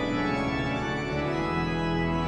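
Church organ playing sustained chords, with a deep bass note coming in about one and a half seconds in.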